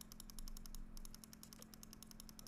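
Rapid, faint computer mouse clicks, many a second, as a frame-step button is clicked over and over, with a faint steady hum underneath.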